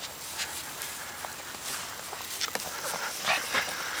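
Irregular soft rustles and light clicks from a small dog moving about on grass close to the microphone.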